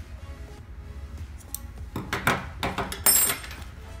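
Metal scissors cutting the yarn and then set down on a wooden table with a sharp metallic clink that rings briefly, a little after three seconds in. Background music plays throughout.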